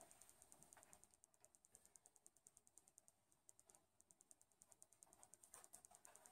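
Near silence: room tone with a faint, rapid, high-pitched ticking, several ticks a second, that pauses for about a second midway.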